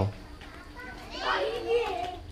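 Children's high voices calling out and chattering, starting about a second in.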